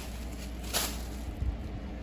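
Brief rustle of a plastic shopping bag being handled, about a third of the way in, over a faint low hum, with a small click later.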